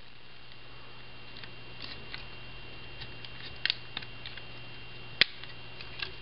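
Hard plastic parts of a Transformers Animated Snarl figure being handled and clicked together during transformation. There are a few light clicks and taps, a double click near the middle, and a sharp snap about five seconds in as the parts are clipped and locked, all over a faint steady hum.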